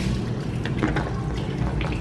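Water running steadily as a cement fish pond drains out through a hose, with a few light clicks.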